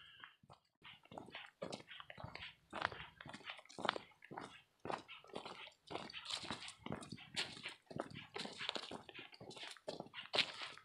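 Footsteps crunching and rustling on a leaf-littered dirt trail: a run of short, irregular crackles of dry leaves and twigs underfoot, with some rustle of clothing and gear.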